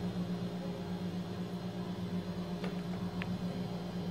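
Steady low hum in the room, with a faint click or two near the end.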